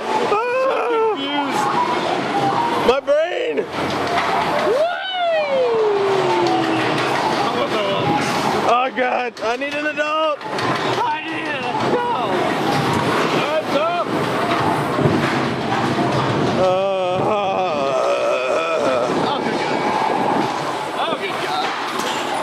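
Riders on a spinning roller coaster yelling and shrieking, with one long falling yell about five seconds in, over the steady running noise of the coaster car on its track.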